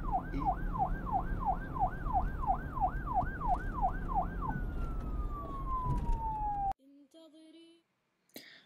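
Police-style siren in yelp mode, sweeping up and down about two and a half times a second over a low rumble, then one long falling wail that cuts off suddenly.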